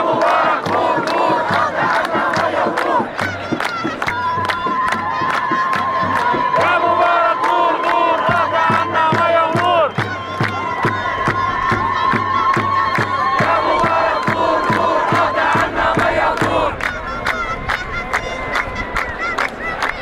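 A crowd of protesters chanting an Arabic slogan against Mubarak in rhythm, led by a child's voice, with steady hand clapping at about two to three claps a second.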